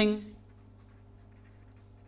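Marker pen writing a word on paper, a run of faint short strokes of the tip.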